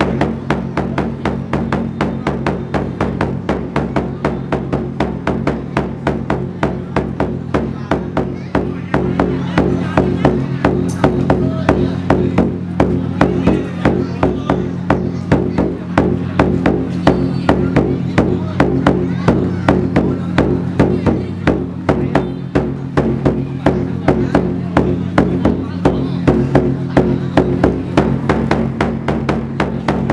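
Fast, steady drumming of a traditional Vietnamese wrestling drum, about five even beats a second without a break, urging on the bout, over a steady low hum.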